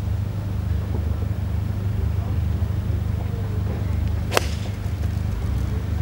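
A golf club strikes a ball off the tee with a single sharp crack about four seconds in, over a steady low rumble.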